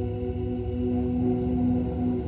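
Ambient electric-guitar drone run through the Dr. Scientist BitQuest digital multi-effects pedal and playing back on a TC Electronic Ditto looper: several steady held tones over a low, fluttering rumble, with a few faint ticks about a second in.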